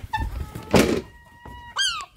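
Herring gulls calling: a short call just after the start, a held call a second in, and a falling squeal near the end. A single thump about three quarters of a second in.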